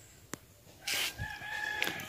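A rooster crowing once, a single held call starting about a second in and lasting about a second, preceded by a short click.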